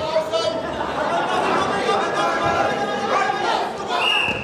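Many voices in a sports hall: spectators and coaches talking and calling out over one another during a wrestling exchange.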